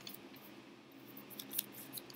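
Paper and a pair of scissors being handled: faint rustling of paper with a couple of short clicks about one and a half seconds in.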